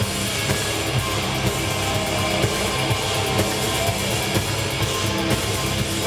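Live heavy metal band playing loud, with distorted electric guitars and a drum kit in an instrumental passage without vocals, heard from the crowd.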